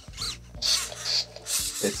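Small servo motors of an Eilik desktop robot whirring in several short bursts, each rising then falling in pitch, as its arms and head move. The motor noise is smoother and less of a noise than before, but still there.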